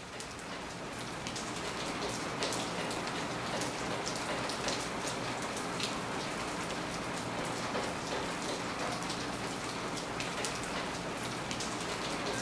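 Steady rain falling, with many small drop ticks through it; it fades in over the first second or two.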